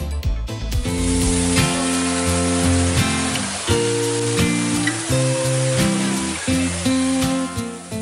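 Background music: held, sustained chords that change every second or so.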